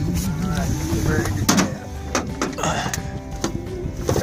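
Men's voices talking indistinctly, with several sharp knocks in the second half.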